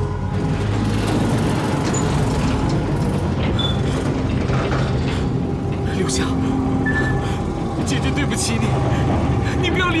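Loud, steady rumbling sound effect of a swirling magical lightning vortex, layered with dramatic music. A man shouts a name about six seconds in and starts crying out again at the very end.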